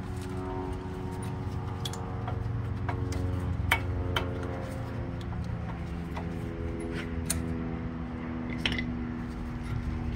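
Front disc brake pads being worked loose from the caliper and bracket: a few sharp metallic clicks and clinks, the loudest about four and seven seconds in. Under them runs a steady low hum with held tones.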